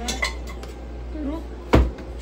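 Dishes and utensils clattering on a kitchen counter: a few light clinks at the start, then one loud knock near the end.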